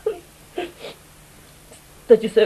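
A woman sobbing: three short sobs in the first second.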